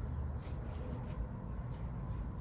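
A Chinese watercolour brush pressing and dragging on raw xuan paper, a few faint soft strokes, over a steady low hum.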